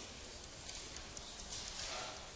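Faint light taps and scratches of a stylus writing on a tablet screen, over a steady low background hiss.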